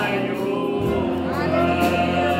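A man singing a Christian worship song through a microphone, with keyboard and bass guitar accompaniment. A held low note comes in about halfway through, under a new sung phrase.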